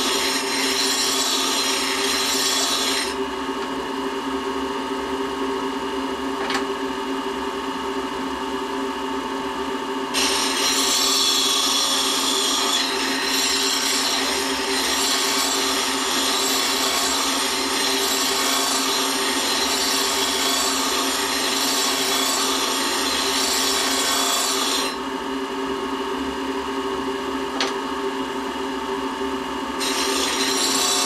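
Electric grinder with a diamond wheel running steadily while a steel lathe thread-cutting tool bit is ground against it in spells: a scratchy grinding for the first few seconds, again from about ten seconds in to about twenty-five, and at the very end. In between only the motor's steady hum is heard.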